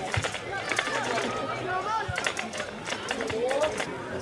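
Several voices of players and spectators talking and calling out in the open air, scattered and overlapping, with a few sharp knocks in between.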